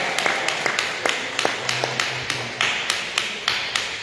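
Hands clapping in a steady rhythm, about three to four claps a second, with a little echo from the hall.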